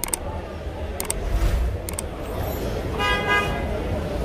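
A car horn gives one short honk about three seconds in, over a steady low outdoor rumble, with a few sharp clicks earlier.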